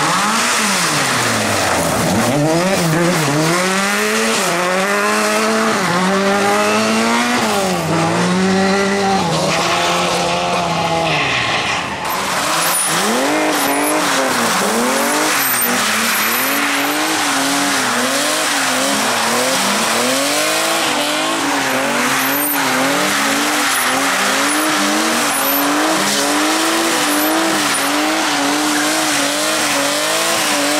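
Rally car engines revved up and down hard while sliding: first a Lada 2107 sliding on gravel, its engine pitch rising and falling in long sweeps. After a cut, a BMW E30 drifting on tarmac, engine bouncing in quicker rises and falls against tyre squeal.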